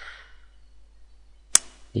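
A single sharp click of a computer mouse button about a second and a half in, over quiet room noise.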